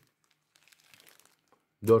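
Faint, scattered crinkling of a clear plastic zip bag as it is handled, a few light crackles about a second in.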